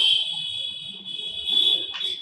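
A steady, high-pitched buzzer tone that interrupts the talk.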